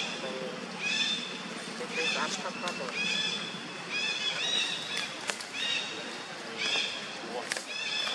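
Long-tailed macaques giving short, high-pitched calls over and over, about one a second, with a couple of sharp clicks in between.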